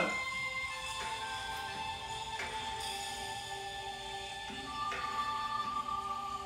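Calm Asian-style zen background music: slow instrumental with long held notes that change every second or two.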